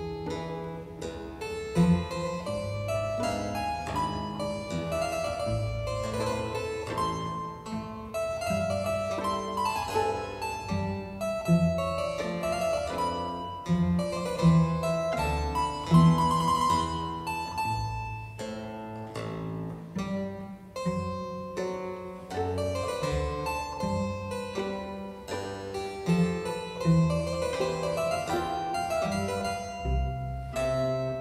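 Instrumental background music: a keyboard piece of quick running notes, in a classical style.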